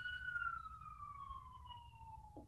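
A faint siren wail: a single tone that rises slightly, then slides slowly down in pitch.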